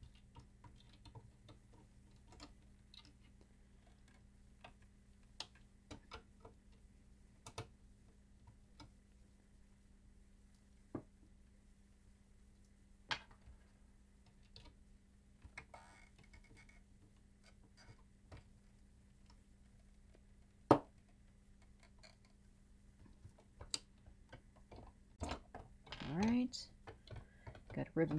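Scattered small clicks and ticks of a screwdriver and metal and plastic parts being handled as a CD changer's drive mechanism is unscrewed and freed from its housing, with one sharper knock about two-thirds of the way through. A low steady hum runs underneath.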